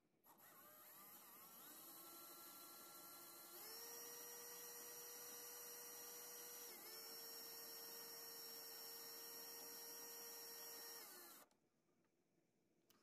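Cordless drill motor whining faintly as it spins, winding 26-gauge copper wire into a coil on a 20-gauge core wire. Its pitch climbs in steps over the first few seconds, dips briefly about halfway, then holds steady until it stops shortly before the end.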